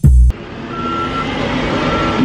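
A music track ends on a final beat, then steady truck-yard rumble with a backup alarm beeping about once a second.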